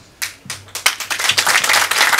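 Audience clapping, starting about a second in and quickly thickening into applause.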